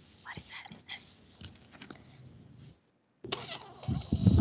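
Faint whispering and breathy sounds from a child over a video-call connection, briefly cutting out just before the three-second mark; near the end a cough begins.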